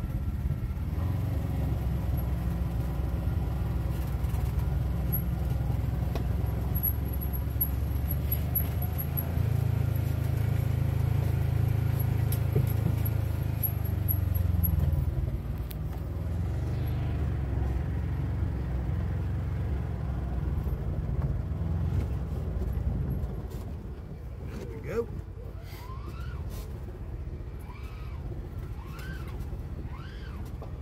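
Side-by-side UTV engine running as it drives slowly down a steep dirt trail, its note easing off about halfway through and dropping again near the end. Short rising bird chirps come in over it in the last few seconds.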